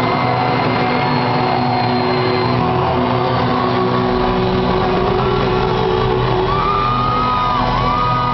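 Live rock band playing loudly with electric guitars, heard from within the audience in a large hall, with a sliding high note near the end.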